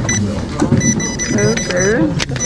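Handheld electronic poker game beeping as it is switched on: a short high beep at the start, then a run of high beeps about a second in.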